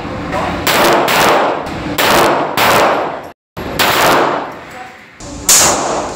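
Handgun fired about half a dozen times at uneven intervals, each shot sharp and followed by a short echo off the walls of an indoor range.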